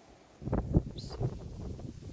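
Irregular rustling and knocks of a handheld camera being handled and moved, starting about half a second in.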